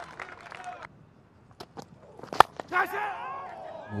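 A cricket bat striking the ball once, a single sharp crack about two and a half seconds in, with faint crowd voices around it.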